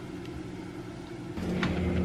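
Low, steady hum of a refrigerator, growing louder about one and a half seconds in, with a faint click shortly after.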